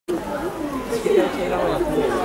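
Several people talking at once: a steady chatter of overlapping voices with no single clear speaker.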